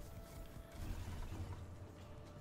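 Online video slot's reel sound effects as a spin plays out: faint mechanical clicking, with a low rumble about a second in as the symbols drop and land.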